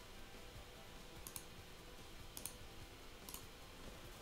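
A few faint clicks from a computer's mouse or keyboard, in three small groups about a second apart, over quiet room tone.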